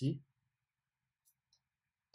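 Two faint computer mouse clicks about a quarter second apart, in an otherwise almost silent pause.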